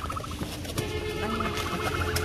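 A rapid, bird-like trilling call that starts about a second in, over a steady low engine hum.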